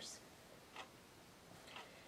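Near silence, with two faint soft ticks about a second apart from a water brush dabbing on watercolor paper.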